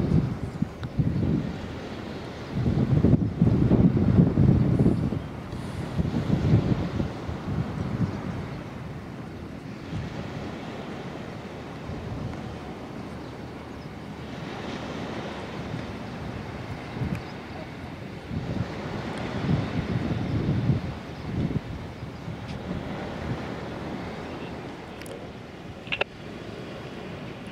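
Wind buffeting the microphone in irregular gusts, strongest in the first few seconds and again around twenty seconds in, over a steady outdoor hiss.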